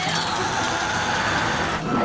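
A loud, steady rushing rumble that stops abruptly near the end: a cartoon sound effect of rocks tumbling down a grassy hillside as a small bicycle hurtles down among them.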